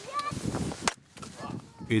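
An axe splitting a firewood log on a chopping block: a few light knocks of wood, then one sharp crack of the blade through the log just before a second in.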